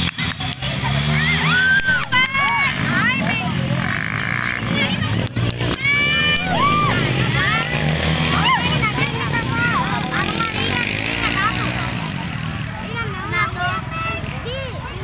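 Small dirt-bike engines running across the field, with spectators shouting and yelling over them in many short cries that rise and fall in pitch.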